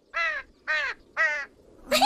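A crow cawing three times, short harsh calls about half a second apart.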